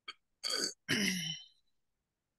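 A man clearing his throat: two short rasps, the second longer and dropping in pitch.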